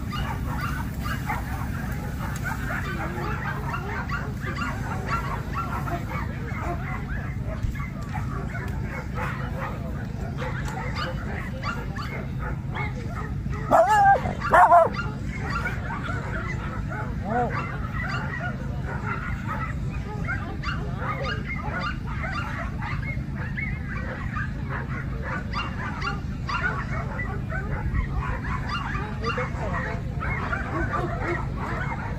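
A dog barking twice in quick succession about halfway through, loud and high-pitched, over steady background chatter of people and occasional faint dog yips.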